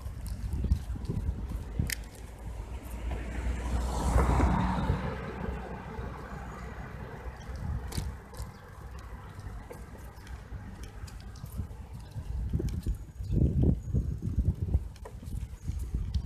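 Wind buffeting the microphone of a phone carried on a moving bicycle, with a car passing about four seconds in, its tyre rush swelling and then fading. Scattered light clicks, and stronger wind gusts near the end.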